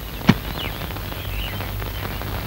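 Faint bird chirps over a steady background hiss, with a single sharp knock about a third of a second in.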